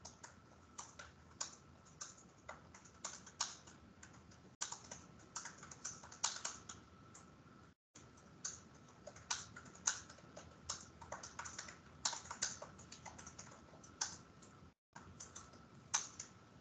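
Faint, irregular clicking of typing on a computer keyboard, several keystrokes a second, over a faint steady tone. The sound cuts out completely for a moment twice.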